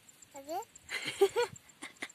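A toddler's small voice making a few short babbled syllables with sliding pitch.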